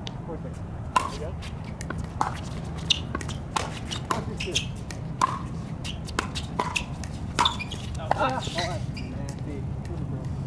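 Doubles pickleball rally: a quick, irregular run of sharp pops as hard paddles strike the plastic ball, several a second at the net. A short voice call comes near the end, over a steady low hum.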